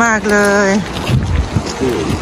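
Wind buffeting the microphone in an uneven low rumble, under a woman's drawn-out spoken words in the first second and faint voices of people walking past.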